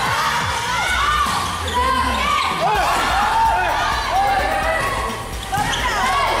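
Volleyball rally: the ball is struck and bounces on a concrete court amid many overlapping shouts from players and spectators.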